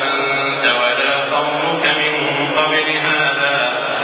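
A man's voice reciting the Quran aloud in melodic tajweed style during prayer, drawing out long held notes with slow shifts of pitch.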